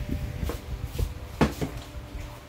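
A few separate knocks and clunks of dishes being handled and set down on a table, the loudest about one and a half seconds in.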